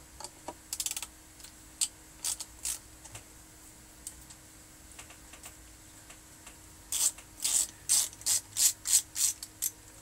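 Hand screwdriver turning a small screw on the X-ray tube's housing, giving sharp ratchet-like clicks: a few scattered ones in the first three seconds, then a quick run of about ten, three or four a second, from about seven seconds in.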